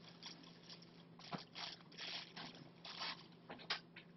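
Clear plastic wrapping crinkling and rustling in hand during gift unwrapping, in irregular faint bursts, over a faint steady low hum.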